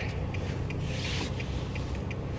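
Fabric of puffy jackets rustling and rubbing close to the phone's microphone as arms move, swelling softly about a second in, over a steady low car-cabin rumble.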